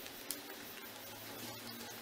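Faint handling of knit fabric and pins as a neckband is pinned to a neckline, with one small sharp tick about a third of a second in and a few fainter ticks after it.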